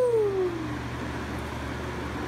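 Lasko Wind Machine floor fan running with a steady whir and low hum. At the start, a drawn-out vocal cry falls in pitch and dies away within the first second.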